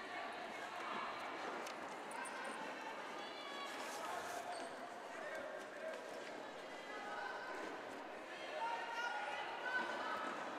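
Faint, steady arena ambience during a roller derby jam: distant voices and crowd murmur, with thuds of quad skates on the wooden court floor.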